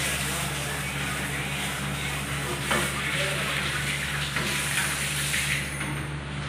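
Steady hiss with a low hum underneath and a brief click about three seconds in.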